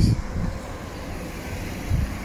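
Wind on the microphone: a steady low rumble.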